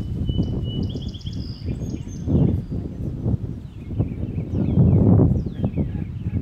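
Songbirds chirping, with a short trilled song early on, over a loud low rumbling noise that swells twice, about two and a half and five seconds in.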